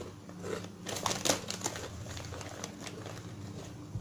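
Plastic snack bag crinkling and crackling as it is handled, in irregular bursts that are loudest about a second in.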